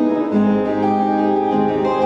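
Three acoustic guitars playing an instrumental piece together, with notes left ringing over a bass line that moves to a new low note about a third of a second in and again shortly before the end.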